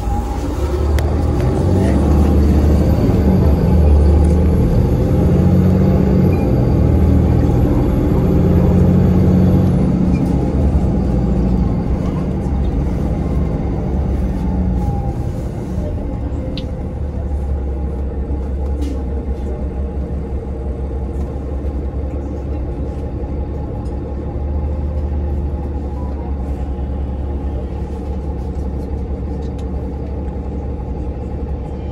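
City bus engine and drivetrain heard from inside the passenger cabin, a low rumble. It is loudest and working hardest for the first ten seconds or so, then settles to a steadier, quieter run.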